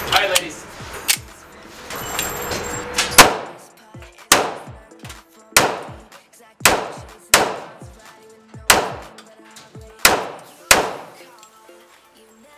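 A 1911 pistol fired eight times, single shots about a second apart, each with a short echoing tail off the indoor range's walls; the first shot is the loudest. A few lighter clicks and knocks come in the first three seconds, before the shooting starts.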